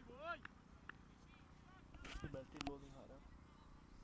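Faint open-air ambience with distant voices calling on the field and a couple of short knocks about halfway through.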